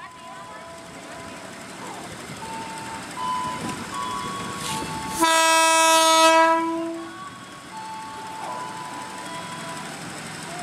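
KRL Commuter Line electric train sounding its horn in one steady blast of about a second and a half, a little past the middle. Electronic two-tone chimes from the level-crossing warning sound before and after it.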